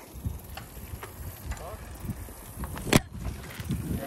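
Low, uneven rumble of wind and road noise on a bicycle's handlebar-mounted camera while riding over asphalt, with a single sharp knock about three seconds in.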